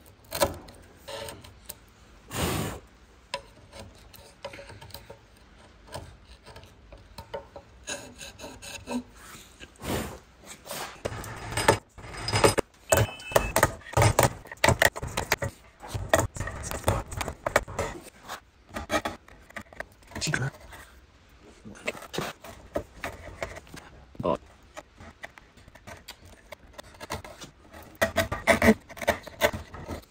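Bench chisel paring a rebate in hardwood by hand: a steady run of short slicing, scraping strokes, with a sharper knock a couple of seconds in.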